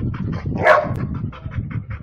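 A dog barking in short bursts as it attacks a lizard, the loudest bark about two-thirds of a second in.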